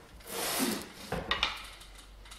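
A long cast-iron No. 7 hand plane slid across a wooden bench top, then knocking a few times as it is set down beside another plane.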